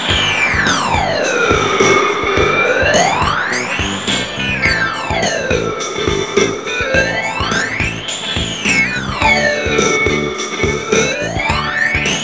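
Electronic music: a synthesizer tone sweeping smoothly up and down in pitch about every four seconds, over a steady beat.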